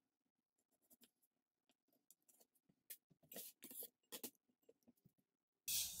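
Chef's knife slicing a red onion thin on a plastic cutting board: faint, scattered soft cuts and taps of the blade, a few a little louder midway.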